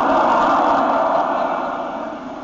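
A congregation laughing together, many voices blending into one wash of laughter that is loudest at first and fades toward the end.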